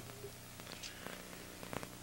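Faint steady low hum with light hiss and a few faint ticks: background noise of the broadcast sound track.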